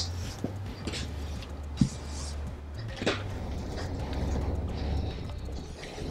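Cotton jersey T-shirt and curtain tape being handled and smoothed flat on a wooden table: soft fabric rustling, with two light knocks about two and three seconds in, over a low steady hum.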